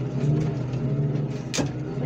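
The car crusher's engine-driven hydraulic power unit running steadily while the press is worked, its pitch bending slightly under load. A single sharp bang about one and a half seconds in.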